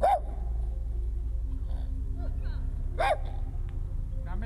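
Farmyard poultry calling: two short calls, one at the start and one about three seconds in, with a few fainter sounds between, over a low steady hum.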